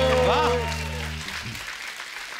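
Short background-music sting: a held note sliding slowly down over a low sustained chord that cuts off abruptly a little over a second in, with studio-audience applause under it.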